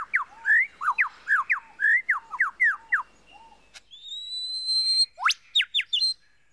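Superb lyrebird singing, running through mimicked calls of other birds: a quick series of clear whistled notes, each sweeping down in pitch, about three a second, then a drawn-out rising whistle and a few sharp upward and downward sweeps near the end.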